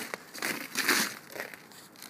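Soft rustling and shuffling handling noise from a phone being moved about, in a few short scattered bursts.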